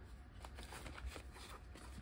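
Faint rustling and light clicks of clear plastic zip envelopes and paper bills being handled in a cash-envelope binder.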